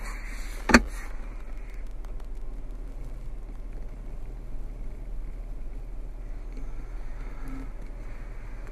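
A single sharp knock about a second in, then a steady low hum inside the SUV's cabin.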